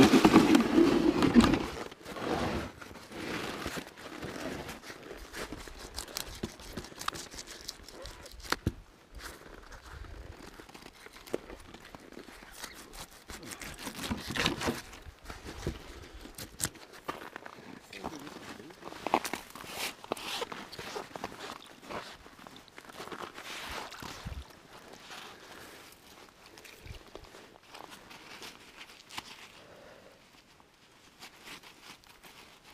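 Rubber-gloved hands handling frozen fish and gillnet on a wooden table on the ice: crinkling, crunching handling noise with scattered knocks. The loudest stretch is a burst of handling in the first two seconds.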